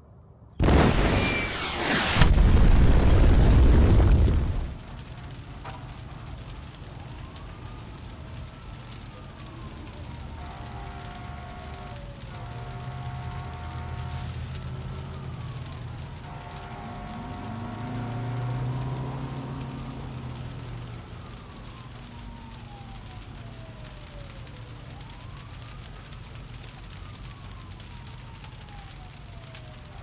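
An explosion sound effect: a loud blast about half a second in that lasts about four seconds, then dies down to a quieter rumble with slow, falling whistle-like tones over it.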